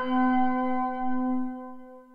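Timer alarm chime's last bell-like note ringing on and fading away, with no new strike.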